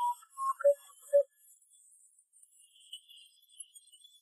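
A short electronic jingle of about five quick, clear notes, stepping down in pitch over the first second or so, like a phone tone; after it only faint hiss.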